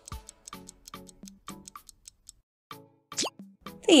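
Light background music of short plucked notes over a ticking beat, stopping about halfway through. A short rising sound effect follows near the end.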